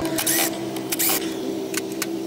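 Scraping and clicking of an RV entry door latch assembly being pried out of the door by hand, in several short bursts, over a steady hum.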